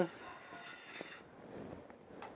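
Telescoping survey bipod leg sliding into its outer tube while the release button is held: a faint scraping hiss with a thin squeal lasting about a second, ending with a light click.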